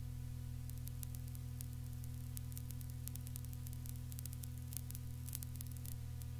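Steady low electrical hum and hiss, with scattered faint crackles that grow more frequent in the second half: the background noise of the microphone and recording chain while no one speaks.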